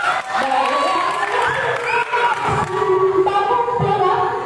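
A crowd of voices shouting and cheering over one another.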